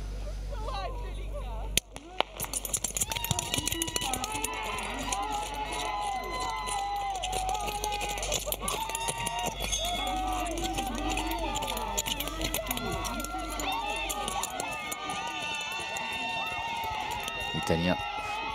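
Starting gun shot about two seconds in, starting a 500 m speed-skating race, then the rapid scrape of speed-skate blades on ice under spectators shouting and cheering.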